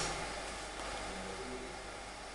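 Quiet room tone: a steady hiss with a faint low hum underneath.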